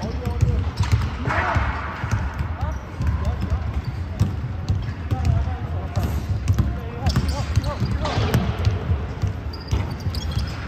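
Basketball bouncing on a hardwood gym floor during a pickup game, with repeated thuds, players' sneakers on the court and players' voices calling out around it.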